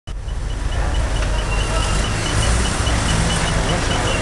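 Vehicle engine running with road traffic noise around it, heard from inside a vehicle on a busy street. A short high-pitched pip repeats about four times a second throughout.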